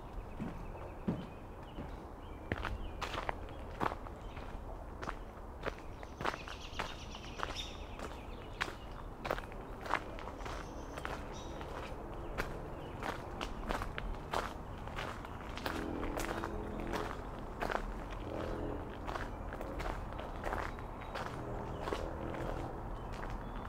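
Footsteps crunching on a gravel path at a steady walking pace, each step a short sharp crunch.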